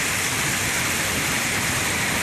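Floodwater spilling over the stepped overflow weir of a full irrigation tank, making a steady, even rush.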